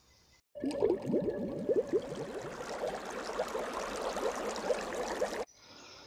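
Shallow stream water gurgling and babbling with many quick bubbling notes. It starts about half a second in and cuts off abruptly near the end.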